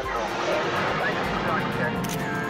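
A steady rushing noise with indistinct, overlapping voices under it and faint music beneath.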